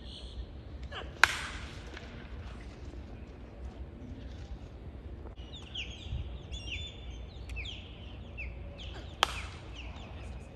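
Two sharp pops, about eight seconds apart, of pitched baseballs smacking into the catcher's mitt; the first is the loudest. A bird chirps repeatedly in short falling notes in the second half.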